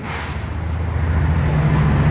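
News-broadcast transition sound effect: a noisy whoosh that swells louder over a steady low rumble.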